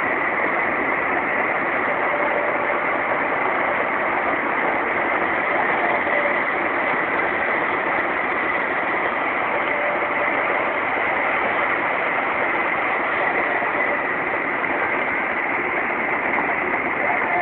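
Porsche Cayenne Turbo driving at about 264 km/h, heard from inside the cabin: a steady, loud rush of wind and road noise with the twin-turbo V8 droning underneath, unchanging throughout.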